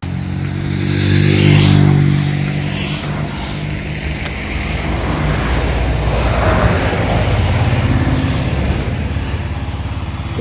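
Motor traffic passing close by: a loud engine hum that is strongest in the first two seconds, with a rush of passing noise, then a lower engine drone carrying on as more vehicles go past.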